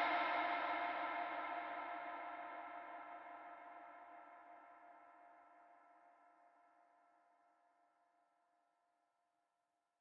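The last sustained note of a hip-hop beat ringing out and fading away, several steady tones dying out within about four seconds.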